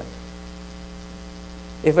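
Steady electrical mains hum, a low buzz made of several fixed tones, heard plainly in a pause in the speech. A man's voice resumes near the end.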